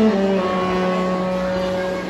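Wind band with an alto saxophone soloist holding one long sustained chord, reached by a short downward step in the bass at the start.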